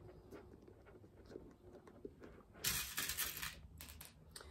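Handling noise of hands working with a cork bag and small metal rivet parts on a cutting mat. It is faint at first, then comes about a second of louder rustling and scraping near the end.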